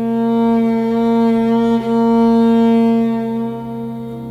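Viola holding one long bowed note that swells up, breaks off briefly near the middle, then fades toward the end, over a low steady drone.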